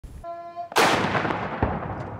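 A ceremonial salute cannon fires a blank round: one sudden loud blast with a long rolling echo that fades away. A short steady pitched tone comes just before it.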